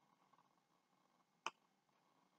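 A single sharp click about one and a half seconds in, against near silence.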